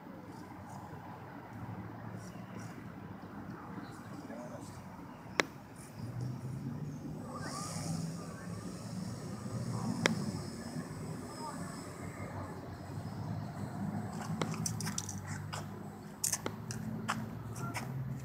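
Model floatplane's motor and propeller humming at taxi throttle as it runs across the water, louder from about six seconds in and wavering as the throttle changes, with a few sharp clicks.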